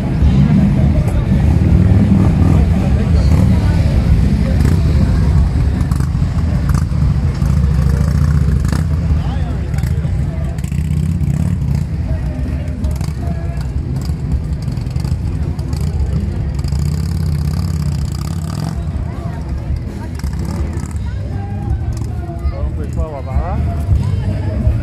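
A deep, steady low rumble of vehicle engines running at idle, with crowd voices around it.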